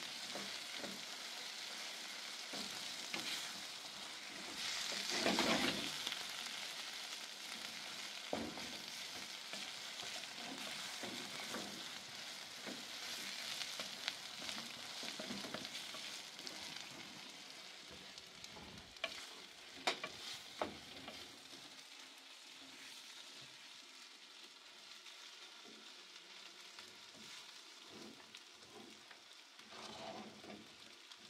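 Meat and vegetables sizzling as they fry in a metal pan on a gas flame, stirred with a wooden spatula that scrapes and taps the pan. The sizzle is loudest about five seconds in, a few sharp taps come near the twenty-second mark, and the sizzle grows fainter over the last third.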